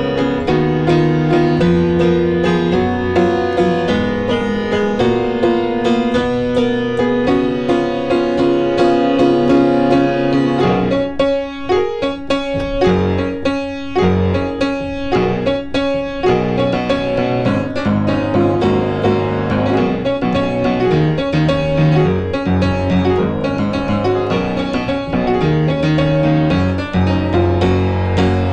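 Piano playing a pop-style arrangement built on four chords, with a moving bass line under the chords. About eleven seconds in comes a run of short, detached chord stabs with brief gaps between them, before the full playing resumes.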